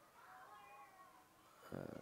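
Near silence with faint, distant voices calling out across the field in the first second, then a man's commentary voice starts near the end.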